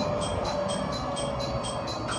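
A rapidly repeating electronic platform chime, about four high notes a second, over the steady low hum of a train at a station platform.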